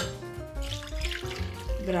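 Water pouring from a small bowl into a large ceramic mixing bowl, under steady background music.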